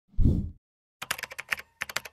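A single deep thud, then a rapid run of keyboard typing clicks lasting over a second: a typing sound effect laid under the text of an edited intro graphic.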